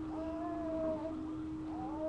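A baby fussing with a long, whiny, held cry, followed by another rising cry near the end.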